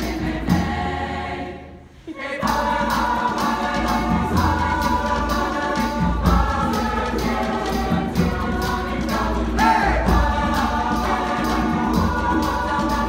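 Large mixed choir singing an upbeat song over a steady percussive beat, with the singers clapping along. The sound dies away briefly just before two seconds in, then the full choir comes back in.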